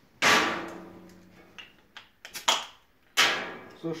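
Crown-capped glass beer bottle being opened: two loud sharp clacks about three seconds apart, each with a short ringing decay, and a few lighter clicks between them.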